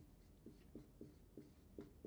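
Faint marker strokes on a whiteboard as words are written by hand: a quick run of short, soft squeaks and taps a few tenths of a second apart.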